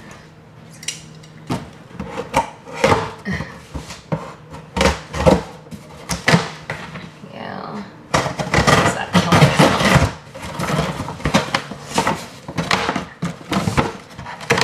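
Scissors cutting open a cardboard shipping box, with irregular scrapes, rips and knocks of the cardboard, coming thicker in the second half.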